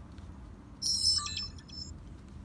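Pilot Electronics dash cam playing its short electronic power-on chime as it boots: a run of high beeping tones, about a second long, starting just under a second in.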